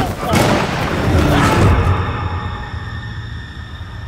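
A grizzly bear growling over a man's cries as it mauls him, with a deep rumble underneath. The attack sounds stop about halfway through, leaving a low rumble that fades.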